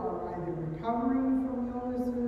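A voice singing slow, long-held notes with little else behind it.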